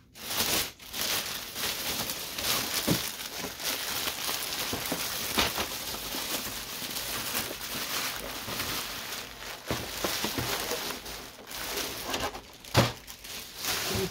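Clear plastic bag crinkling and rustling as it is pulled off a new printer, with a few sharp knocks along the way.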